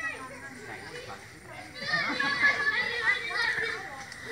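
Children's voices in the background, talking and calling out as they play, louder in the second half.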